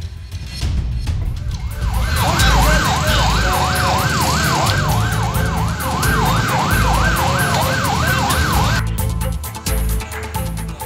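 Emergency-vehicle siren in a fast yelp, its pitch sweeping up and down about three times a second for some seven seconds, over music with a steady low beat.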